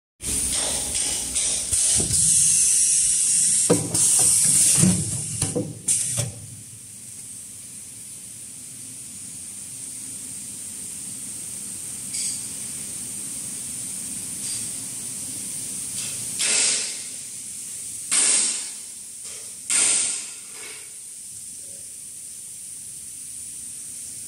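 XY-GU-28 tissue paper packing machine running with a steady high hiss. Louder noisy stretches come in the first six seconds, and three short loud bursts of noise come a few seconds before the end, as tissue stacks are pushed into plastic bags.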